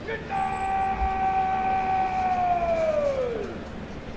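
A single drawn-out shouted parade-ground word of command, held on one high pitch for about two and a half seconds and then dropping away in pitch at the end.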